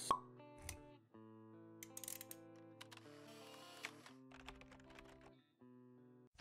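Faint logo-intro jingle of held synth notes, opening with a soft pop and broken by a few quick clicks.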